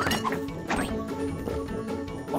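Playful cartoon background music with short comic sound effects: a quick rising whistle at the very start and a sharp hit just under a second in.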